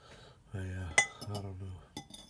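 Metal fork clinking against a plate while eating, with one sharp clink about a second in and a lighter one near the end. Under it is a low, drawn-out hum from the eater's voice.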